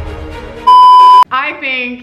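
Background music fading out, then a loud, steady electronic bleep at a single pitch lasting just over half a second, cut off sharply.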